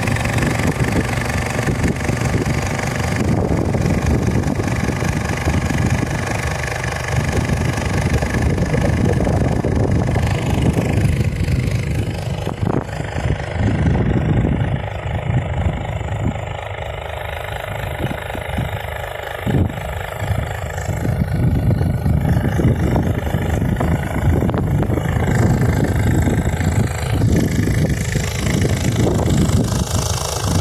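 Small outboard motor running steadily as it drives an inflatable boat forward. It eases off a little about halfway through, then picks up again.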